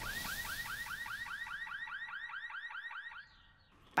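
Cartoon sound effect: a quick rising-and-falling chirp repeated about seven times a second, fading out a little after three seconds in. Under it, the noisy tail of a loud crash dies away.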